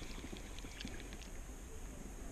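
Spinning reel being cranked to wind in a small hooked trout, giving faint irregular clicks over a low steady rumble of handling or wind noise on the camera.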